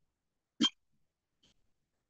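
A single short sound from a person's throat, a little over half a second in, followed by a faint tick near the end.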